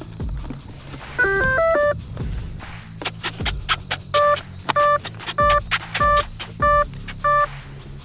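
Electronic speed controller of an E-flite F-16 80 mm EDF jet powering up: a quick stepped run of beep tones about a second in, then six short even beeps about half a second apart, the cell count for a 6S battery.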